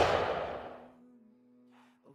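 The fading tail of a cinematic boom-style impact sound effect, dying away over about a second, followed by a faint held low musical note.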